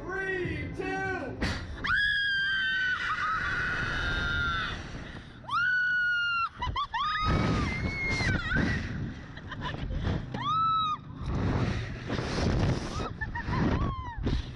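Two riders screaming on a Slingshot reverse-bungee ride as it flings them up: several long, high-pitched screams, over wind rushing across the onboard camera's microphone.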